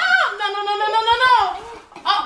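A child's drawn-out, high-pitched whining cry of protest that trails off and falls in pitch about a second and a half in.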